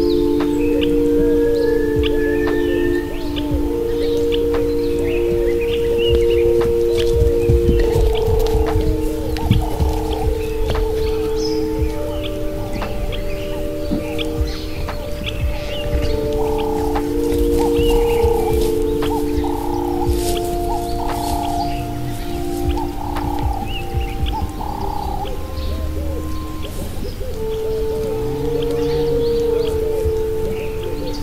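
Slow ambient meditation music of long, overlapping held notes that change pitch every few seconds, with short bird chirps scattered over it and a low rumble beneath.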